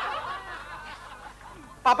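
Soft laughter fading away, then someone calls "Papa" near the end.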